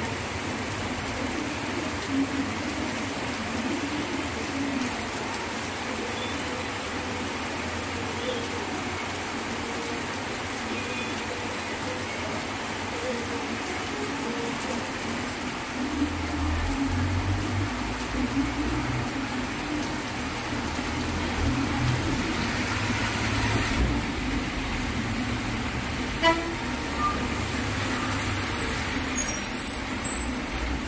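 Heavy rain falling steadily on a street. From about halfway through, a bus engine rumbles close by, and a vehicle horn toots briefly near the end.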